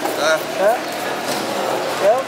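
Indistinct voices talking in a busy market, short scattered syllables over a steady background hum, with no chopping heard.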